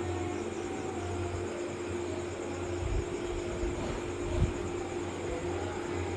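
Steady low background hiss with a faint hum, and two soft thumps about three and four and a half seconds in.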